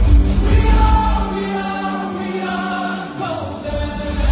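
Live pop song with a male singer over a loud amplified backing track, heard from within the audience. The beat and bass drop out a little over a second in, leaving held voice and chord tones, and come back just before the end.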